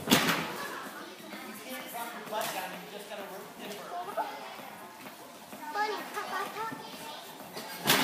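Background chatter of children's voices echoing in a large gymnastics hall, with a sharp thump just after the start and another near the end.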